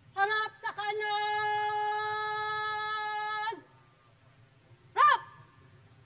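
A drill commander's shouted command: one long drawn-out held call of about three seconds that falls off at the end, then about five seconds in a short, sharp executory word that sets the formation marching.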